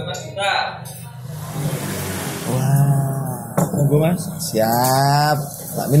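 A man's voice: drawn-out vowels and a few short murmured words, with one long held sound near the end.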